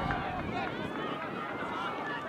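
Several voices shouting and calling across an outdoor soccer field during play, overlapping one another.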